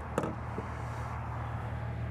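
Steady low mechanical hum of running machinery, with a single sharp click about a fifth of a second in as the fuel-fill door is pushed shut.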